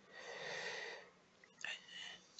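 A faint breath from a man at the microphone, lasting about a second, with a couple of very soft mouth sounds near the end.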